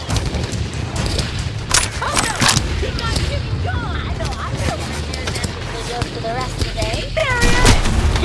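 Bangs of blaster-shot sound effects about two seconds in, then high, wavering voice-like squeaks and chatter with a falling cry near the end, over a steady low rumble.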